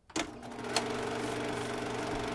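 Reel film projector switched on with a sharp click, its motor starting and settling into a steady mechanical running hum, with another click just under a second in.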